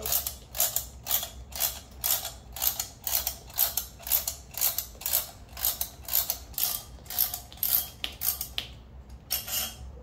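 Ratcheting combination wrench clicking in steady strokes, about three clicks a second, as it turns the threaded rods of a coil-spring compressor on a motorcycle rear shock to let the spring tension off. The clicking stops near the end, with a last few clicks just after.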